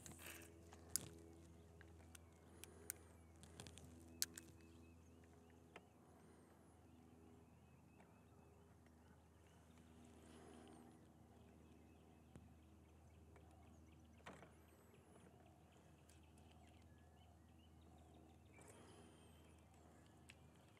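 Near silence: a faint steady low hum, with a few faint clicks in the first few seconds and a few faint high chirps later on.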